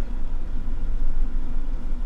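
Steady low rumble of a car's engine idling, heard inside the car's cabin.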